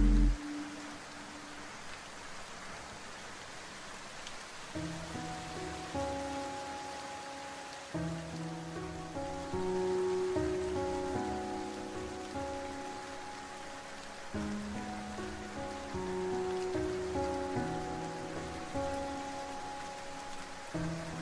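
Steady rain falling, with chill lofi music. A louder passage of music stops just after the start and the rain is heard alone for about four seconds, then soft lofi music with a bass line comes back in about five seconds in.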